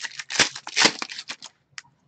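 A Donruss Soccer trading-card pack wrapper being torn open and crinkled in the hands as the cards come out: a quick run of sharp crackling rustles that stops about a second and a half in, followed by a couple of faint ticks.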